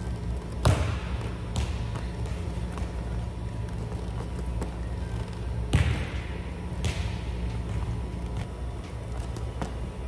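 A volleyball striking the hands and the hardwood gym floor: two pairs of sharp, echoing thuds about a second apart, the second of each pair fainter, over a steady low hum.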